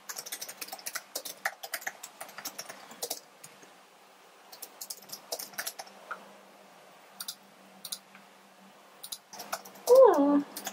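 Typing on a slim white Apple keyboard: runs of quick key clicks broken by short pauses, over a faint steady hum. Right at the end a cat starts a loud meow that falls in pitch.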